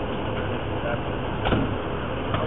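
Emergency vehicle engine idling with a steady low rumble, with one sharp knock about one and a half seconds in and faint voices in the background.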